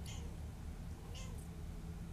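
Kitten mewing twice, two short high-pitched mews about a second apart, over a low steady background hum.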